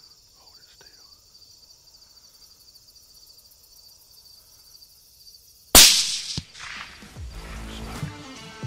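Crickets chirring steadily in a field with faint whispering, then about six seconds in a single very loud gunshot cracks and echoes, fired at a whitetail buck. Electronic music comes in just after.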